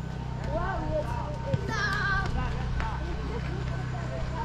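Voices in the background calling and talking, over a steady low hum.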